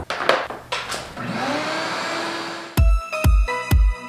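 A few handling clicks, then an orange Ridgid wet/dry shop vac is switched on: its motor winds up with a rising whine and settles into a steady run with a rush of air. About three-quarters of the way in, electronic music with a heavy kick drum about twice a second takes over.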